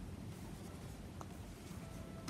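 Faint rustling of macramé cord being pulled through stitches with a crochet hook, with one light click about a second in.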